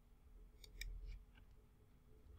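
A few faint, quick computer mouse clicks in the first second and a half, over near silence.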